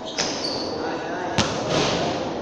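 A basketball bouncing on a hard court floor in a large echoing hall: two sharp bounces about a second apart.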